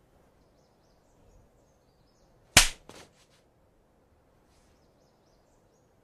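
A single sharp bang about two and a half seconds in, followed quickly by a few fainter clicks, with faint high chirps in the background.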